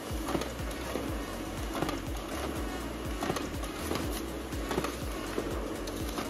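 Lexmark MS431 laser printer running a multi-page double-sided job: a steady low motor hum with regular clicking of the paper feed as sheets are pulled through, partly ejected and drawn back for the second side.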